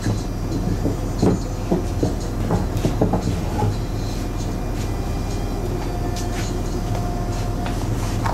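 Car-body straightening with a hydraulic puller drawing out the car's crumpled rear: irregular clicks and knocks, mostly in the first half, over a steady low hum.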